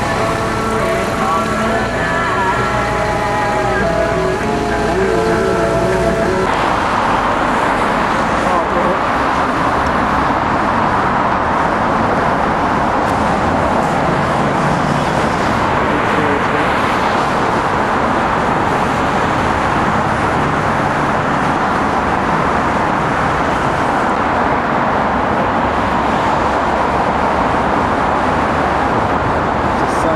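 Music for the first six seconds or so, cutting off abruptly. After that, steady traffic and road noise from a moving car.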